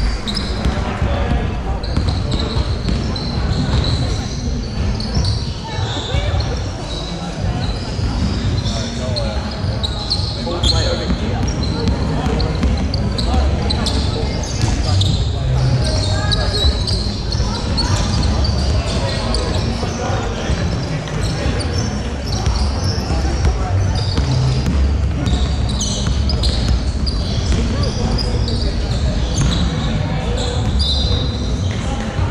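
Basketball game sounds: a ball bouncing on the wooden court, players' shoes squeaking and players' voices calling out, all echoing in a large hall.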